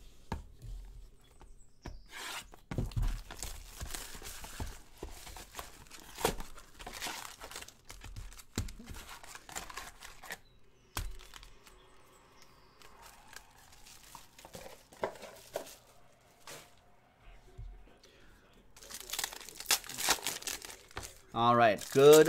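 Plastic shrink wrap being torn off a sealed box of trading cards and crinkled, in irregular bursts. The box is then opened and the card packs inside are handled with a crinkling rustle. Near the end, louder tearing and crinkling comes as a card pack is ripped open.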